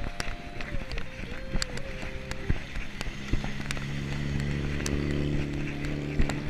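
Mountain bike rolling over a road, its parts rattling in sharp clicks, while a car's engine hum builds from about halfway through and grows steadily louder.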